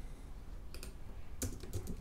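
Typing on a computer keyboard: a couple of faint keystrokes, then a quick run of keystrokes in the last half second.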